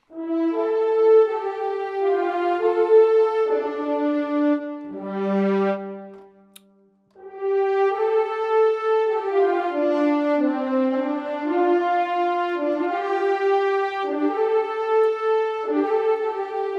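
Sampled orchestral legato ensemble of horns doubled by violins and violas in unison, played as a fast-moving melody with the notes joined smoothly one into the next. It plays in two phrases with a short break about six seconds in.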